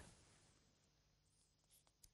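Near silence: a gap between two news items, with only faint background hiss.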